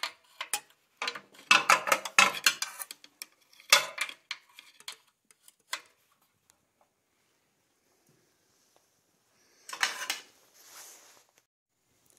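Metal wrench clinking and scraping on a carburetor intake bolt as it is tightened in small turns, in short irregular clicks over the first several seconds. After a pause there is a brief rustling burst near the end.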